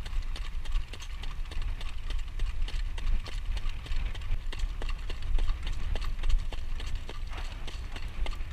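Harness horse's shod hooves clip-clopping on a paved lane in a quick, even rhythm as it jogs in front of a training cart, over a steady low rumble.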